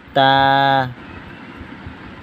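A man's voice reciting the Arabic letter "ta" as one drawn-out syllable on a steady pitch, lasting under a second, followed by low steady background noise.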